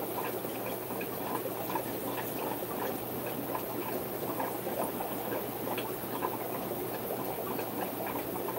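Green algae water running out of a siphon hose into a jar below, a steady crackling trickle and splash, over a low steady hum.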